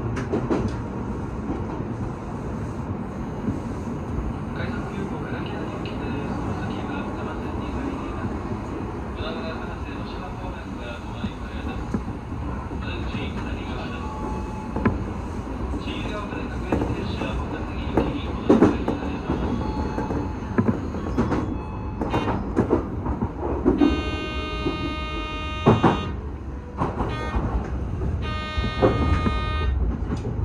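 Odakyu 1000-series electric train running, heard from inside the driver's cab: a steady rumble of wheels and motors, with clicks and clatter over rail joints and points that come more often in the second half. Near the end, two steady, many-toned horn-like blasts sound, the first about two seconds long and the second about a second and a half.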